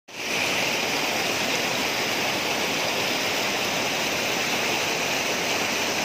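Spring-fed mountain stream cascading over rocks: a steady rush of water.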